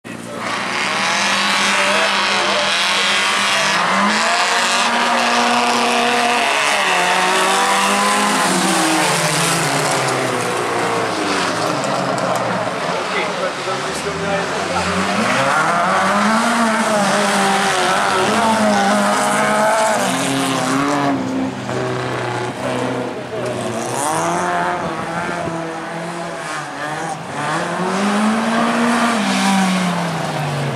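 Small hatchback autocross race cars running on a loose dirt track, engines revving up and falling back again and again as they accelerate, shift and brake through the corners.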